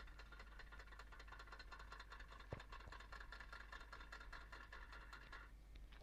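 Westerstrand impulse clock's movement ticking faintly and rapidly, several steps a second, as 24-volt pulses from the control circuit drive the minute hand forward to advance the clock an hour. The ticking stops shortly before the end, with a low mains-like hum underneath.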